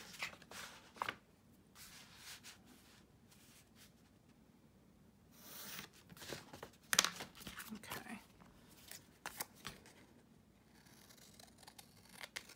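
Scissors cutting through a manila file folder, with a few sharp snips in the second half, amid the rustle of paper folders being shifted on a cutting mat.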